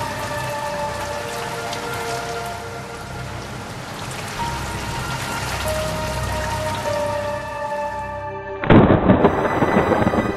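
Rain and rolling thunder with soft, sustained music notes held over them. Near the end it cuts suddenly to louder music that opens with a heavy hit.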